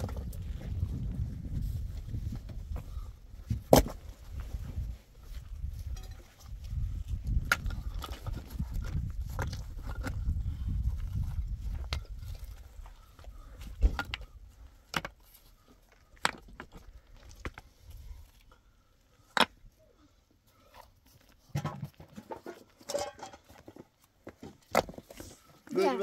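Large rocks being lifted and set against a cinder-block wall by hand, with sharp separate knocks of stone on stone, loudest about four seconds in and again near the middle. Wind rumbles on the microphone through the first half.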